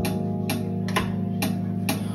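Live band music in a gap between sung lines: electric guitar and keyboard holding a steady chord over a light tick about twice a second.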